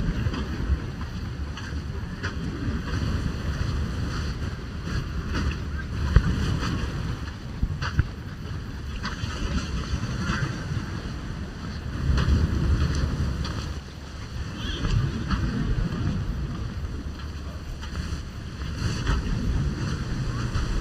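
Wind buffeting the microphone in gusts, a low rumble that swells and fades, over the steady wash of small waves on a sandy beach.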